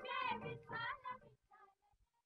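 The last sung phrase of a Marathi bhakti song: a high singing voice with light accompaniment, dying away about a second and a half in as the track ends.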